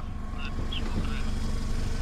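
Car engine idling, a steady low rumble, with faint voices talking over it.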